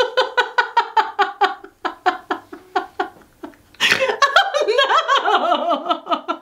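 A woman laughing hard in quick, rhythmic ha-ha pulses that die away after about two seconds. Near four seconds a second, higher fit of laughter breaks out.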